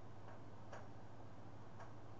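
Quiet room tone with a steady low hum and a few faint clicks.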